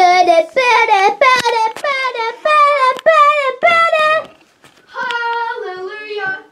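A child singing in a high voice, a run of short, wavering notes that breaks off briefly about four seconds in and then starts again.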